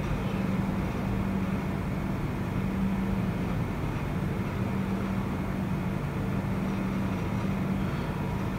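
Steady background hum and hiss with a constant low drone, unchanging throughout, with no distinct pen strokes standing out.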